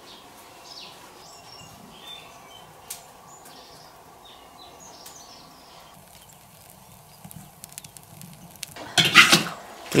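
Mostly a faint, steady background of the covered wok on its wood fire, with a few small crackles. About nine seconds in, a loud splashing rush as boiled broom-plant greens are lifted out of the wok's water with a strainer, water pouring off them.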